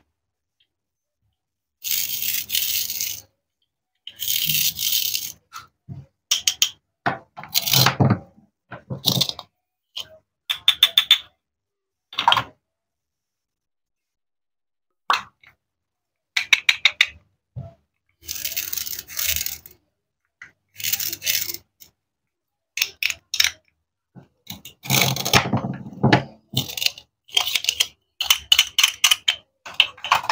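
Toy plastic and wooden fruit pieces being handled: sharp clicks and knocks as halves are fitted together and set down, with several scraping rasps about a second long, spaced out between short silences.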